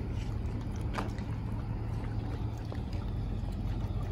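Steady low drone of a motorboat engine running on the water, with a faint click about a second in.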